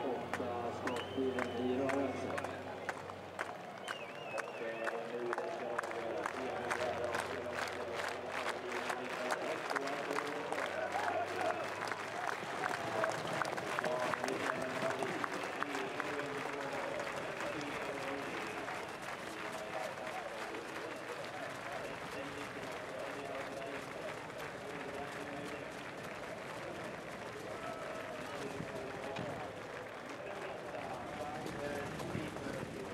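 Large grandstand crowd clapping in a steady rhythm, fading out about halfway through, over a constant murmur of voices.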